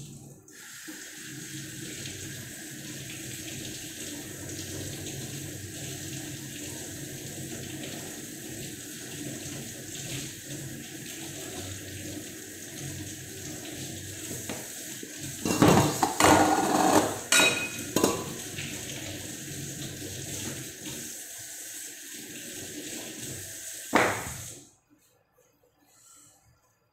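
Kitchen tap running steadily into a sink as ice is rinsed off frozen fish fillets, with a burst of clattering dishes about two-thirds of the way through and a knock just before the water is shut off near the end.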